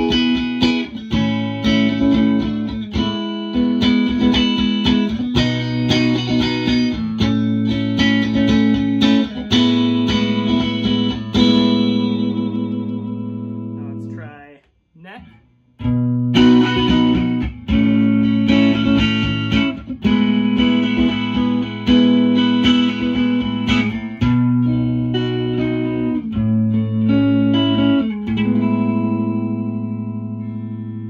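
Electric guitar, a Fender Japan JM66 Jazzmaster, played through an amp: strummed chords and picked notes ringing out. About halfway through the playing dies away to near silence for about a second, then starts again.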